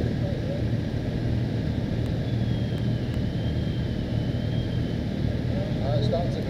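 A group of motorcycles idling while stopped: a steady low engine rumble.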